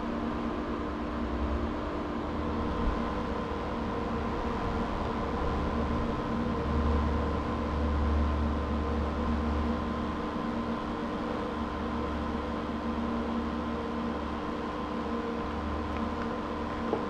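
Steady machine hum made of several held tones, over a low rumble that grows louder for a few seconds around the middle.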